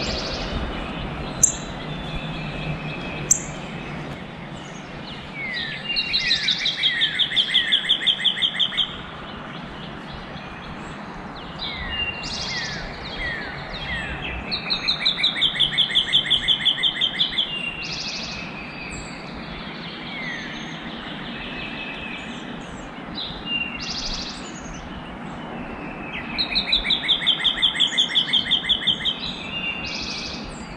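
A songbird sings the same song three times, each a few down-slurred notes running into a fast, even trill of about three seconds. Two sharp clicks come in the first few seconds, over a steady outdoor background hiss.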